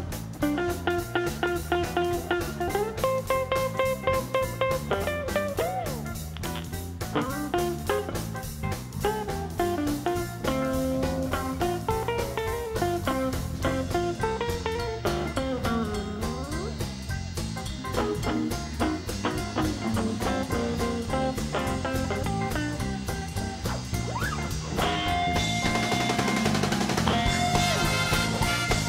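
Blues band playing live: a lead on a Gibson semi-hollow electric guitar with bent, sliding notes over bass, drums and keyboards. About three-quarters of the way through, the band gets louder and fuller.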